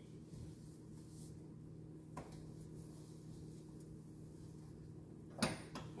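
A low steady hum in the kitchen, a light click about two seconds in, then a sharp metallic clatter near the end as a gas stove's burner grate is lifted.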